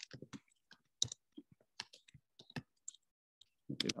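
Computer keyboard typing: uneven key clicks, about four a second.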